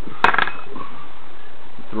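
A small metal model nitro engine is set down and shifted on the table: one sharp clack about a quarter second in, then a brief rattle with a short metallic ring, over a steady hiss.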